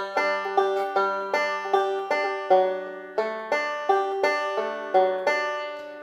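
Five-string banjo played fingerstyle: a steady backup pattern of plucked notes and chord pinches, about two to three notes a second, each ringing and decaying.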